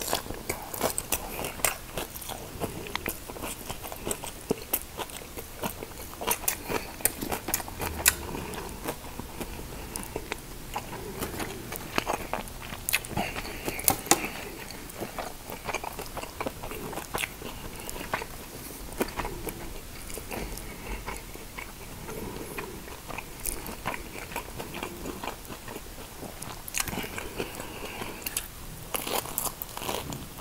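Eating fresh rice-paper spring rolls filled with shrimp and lettuce: repeated bites and chewing, with many irregular sharp crunches and wet mouth clicks.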